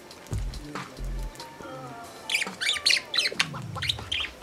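Pet budgerigar giving a quick burst of high chirps and warbles about two-thirds of the way through, over soft background music. A long falling glide follows near the end.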